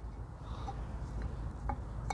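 Low steady background hum with a faint metallic click about one and a half seconds in, from the pieces of an inner tie rod tool set being handled.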